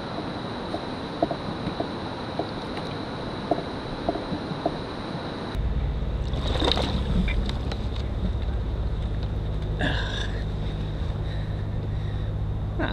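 Open-air ambience from a kayak on a river: a steady hiss with faint small taps, then, after a sudden change about halfway, a steady low rumble of wind on the microphone with a few brief sharper sounds.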